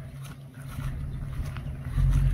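Pickup truck engine running steadily at low speed as it tows a trailer past, a low even hum.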